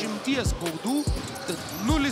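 A basketball being dribbled on a hardwood court: three bounces at a slow, even pace, each a low thud with a short ring.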